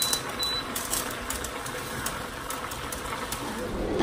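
Chicken and mixed vegetables sizzling in a frying pan on an induction hob, a steady frying hiss with a few light clicks of a silicone spatula against the pan.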